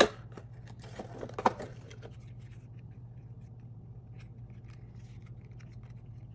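Cardboard advent-calendar door punched open with a sharp snap, then about a second later a short burst of scraping and clicks as a tiny cardboard toy box is pulled out of its slot, followed by faint handling clicks.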